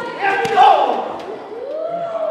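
Voices calling out in a large, echoing hall: a short call near the start and a long call that rises and falls near the end, with a brief sharp knock about half a second in.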